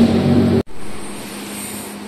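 A steady low hum of background noise cuts off abruptly just over half a second in. Quieter, even room tone follows.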